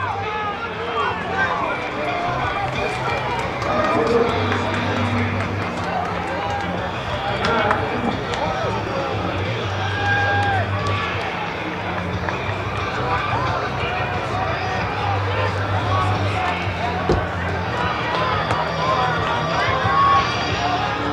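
Spectators' voices at an outdoor track: many people talking and calling out at once, overlapping throughout, with a low steady hum underneath.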